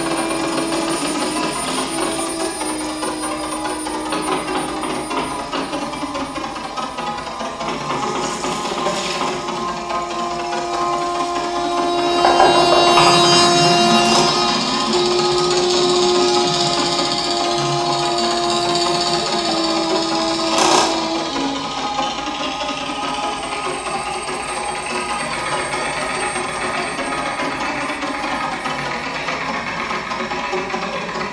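Electro-acoustic improvised music: long held drone tones, shifting slightly in pitch, over a dense, slowly changing textured wash. The sound swells louder about twelve seconds in, and a single sharp hit cuts through about twenty-one seconds in.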